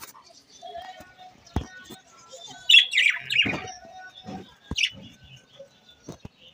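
Budgerigars chirping in an aviary: scattered high chirps, loudest in a burst about halfway through. A couple of sharp knocks are heard among them.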